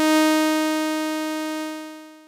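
A single synthesizer note from Harmor's sawtooth wave, with a full, bright stack of harmonics, shaped by its active volume envelope: it swells in, peaks early, then fades steadily and falls away faster near the end.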